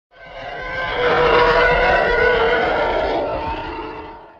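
A long, rough, animal-like roar that swells over about the first second, holds, then fades out at the end.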